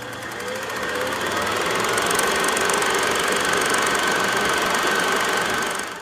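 Film projector running, a rapid, even mechanical clatter that swells in over the first couple of seconds and then holds steady.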